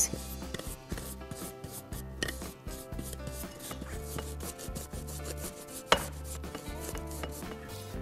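Paintbrush dabbing paint onto a jar lid coated in textured paste: a quick, irregular run of soft brushing ticks, with one sharper tap near the end.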